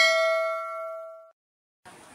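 Notification-bell ding sound effect of a subscribe-button animation: a bright chime of several ringing tones that fades and then cuts off abruptly about a second and a third in. Faint outdoor background noise comes in near the end.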